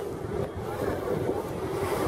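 Wind rumbling on the camera microphone over a steady wash of outdoor noise.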